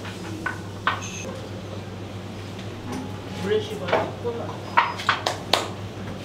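Sushi-counter room sound: scattered light clinks and taps of tableware, with one short ringing ping about a second in and a cluster of sharper clicks near the end. Under them run a steady low hum and faint murmured voices.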